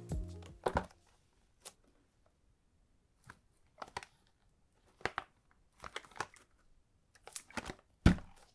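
Cellophane wrapping on two perfume boxes crinkling in short, separate bursts as hands handle and turn the boxes, after background music fades out in the first second.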